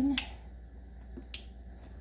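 Two sharp plastic clicks, one right away and another about a second later, as the electrical wiring connector is pushed onto the EVAP purge solenoid of a 2004 Saturn Vue.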